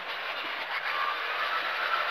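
Skoda rally car's engine and road noise heard inside the cabin at speed, a steady even rush with no gear changes or revving.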